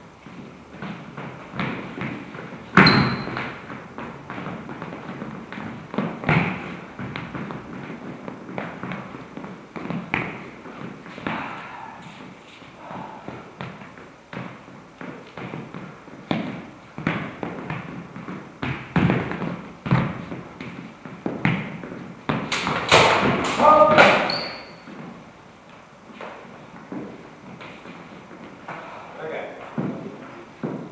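Steel training longswords clashing in a fencing bout, amid the thuds of the fencers' footwork on a hard floor. There is a sharp clash about three seconds in and a quick flurry of strikes around 23 seconds, with a brief high ring after the loudest blows.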